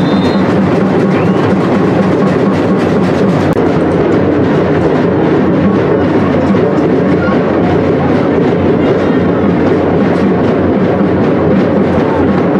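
Drums playing continuously, a loud, dense run of rapid beats.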